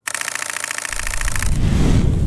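Intro explosion sound effect. A harsh buzz starts suddenly and cuts off about a second and a half in, while a deep rumble swells beneath it and peaks near the end.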